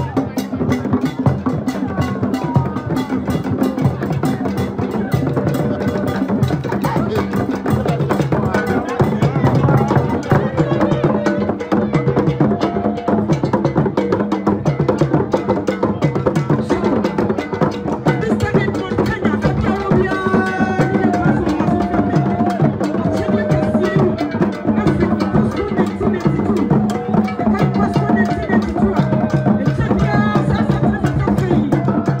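Traditional drums beaten in a fast, dense rhythm, with voices over the drumming.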